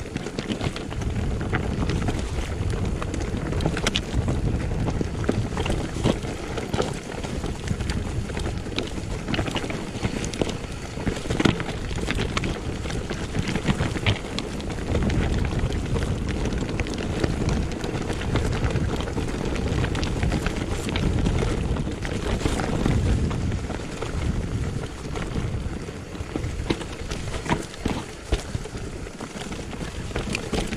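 Mountain bike riding downhill over stones and dirt: steady tyre rolling noise with frequent clicks and rattles from the bike, and wind buffeting the microphone.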